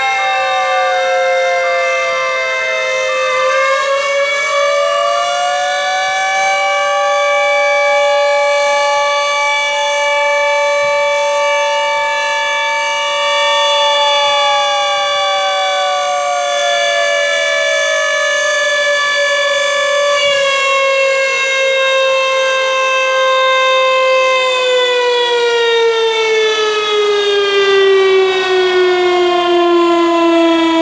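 Several fire engine sirens sounding together, their pitches held for seconds and slowly rising and falling against each other. Over the last few seconds they all wind down in pitch.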